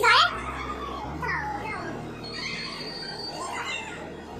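Children's voices calling and squealing while playing, with a loud cry right at the start and shorter calls after it, over faint background music.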